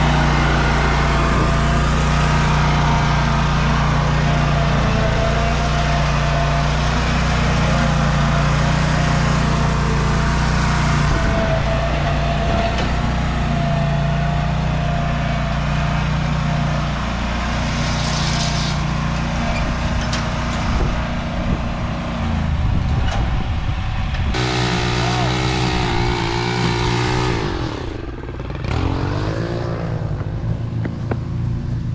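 Exmark zero-turn mower engine running steadily as the mower drives across the lawn and up a ramp onto a trailer. Its note changes past the halfway point. A different engine-like sound takes over in the last few seconds.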